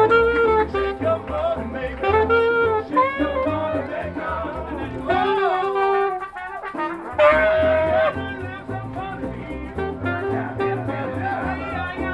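Brass street band playing live: saxophone and trumpets over a pulsing bass line. About five seconds in the bass drops out briefly while the horns slide in pitch, then the full band comes back in on a loud held horn note.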